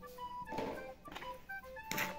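Background music: a light melody of short notes. Under it come a few brief scrapes from a scoop and a hand stirring dry cement, sand and mortar powder in a plastic basin.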